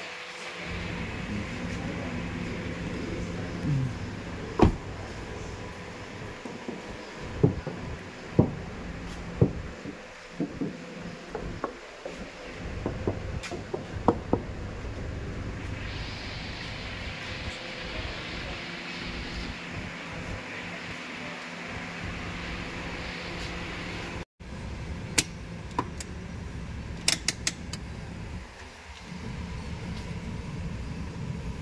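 Steady hum of a car engine idling, with scattered sharp clicks and taps from hands handling the car body.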